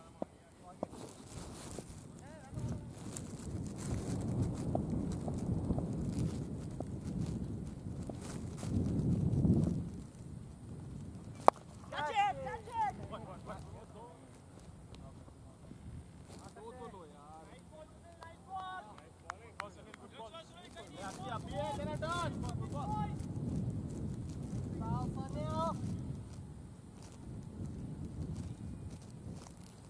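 Wind rumbling on the microphone in two long gusts, one sharp knock a little before the middle, then distant calls and shouts from players across the field.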